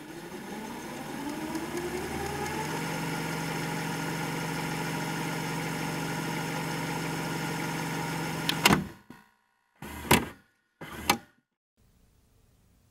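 VHS videocassette recorder fast-forwarding: the tape transport motor whirs, rising in pitch over the first couple of seconds and then running steadily. About three-quarters of the way in a sharp click stops it as the deck is stopped, followed by two more short mechanical clunks.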